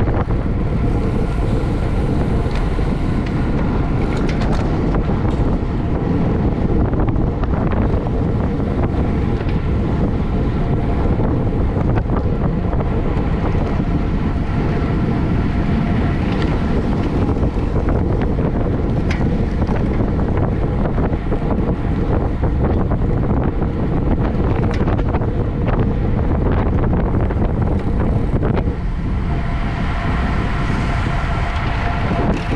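Wind buffeting the microphone of a camera on a road bike ridden at race pace, a steady rush with the hum of tyres on asphalt beneath it and a few faint clicks.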